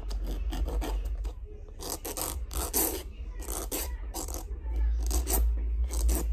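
Hand nail file rasping across a plastic full-cover press-on nail tip to reshape its edge. Irregular strokes, about one or two a second, with short pauses between them.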